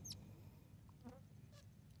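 Near silence: faint outdoor background, with one brief faint high falling chirp at the very start.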